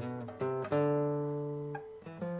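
Nylon-string classical guitar plucked one note at a time, notes of the A minor pentatonic scale: a few quick notes, then one note left ringing for about a second, and a fresh note just before the end.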